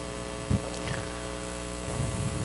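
Steady electrical mains hum, with a single dull step of a dance shoe on the wooden floor about half a second in.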